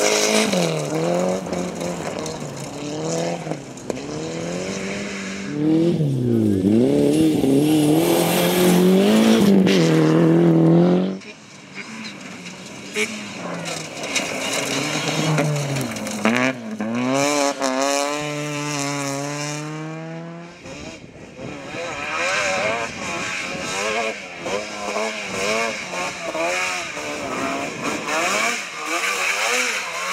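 Rally car engines revving hard on a gravel stage, the pitch rising and falling over and over as the drivers change gear and lift off through the corners. First comes a Mitsubishi Lancer Evo, then other rally cars in turn. The sound changes abruptly about eleven seconds in and again about twenty seconds in.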